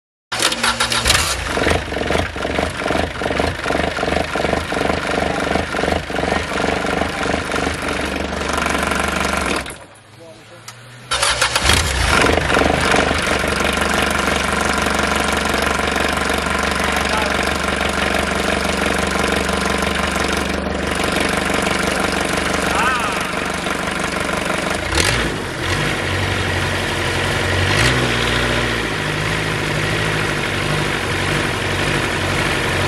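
Small inboard marine engine starting and running with a fast, even beat on a test stand. About ten seconds in it drops away for a moment, then comes back and runs steadily. It is running on a new water-pump impeller, and by the end raw cooling water is discharging from the exhaust outlet.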